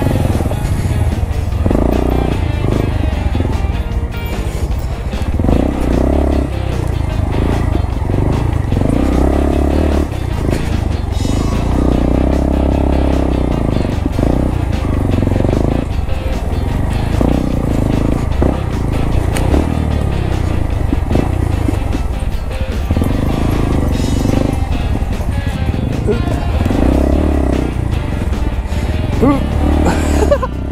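Background music over the single-cylinder engine of a Honda Grom motorcycle running as it is ridden off-road.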